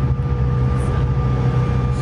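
Steady low drone of an airliner's cabin, the hum of its ventilation and engines, with a faint steady whine above it.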